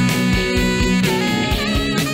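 A small band playing: electric guitar, bass guitar and saxophone over a steady beat.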